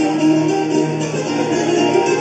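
Viola caipira, the Brazilian ten-string steel-strung guitar, playing an instrumental solo line of quick plucked notes, with a second guitar-like instrument accompanying.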